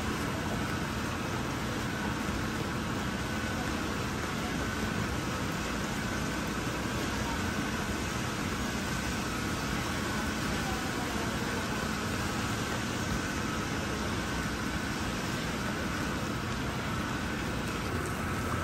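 Steady rain falling on a flooded paved courtyard, an even hiss of water, with a faint steady machine hum underneath.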